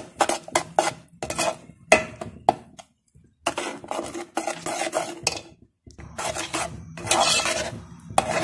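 Metal spoon scraping and clinking against a pan while stirring masala, in quick repeated strokes with a brief pause about three seconds in.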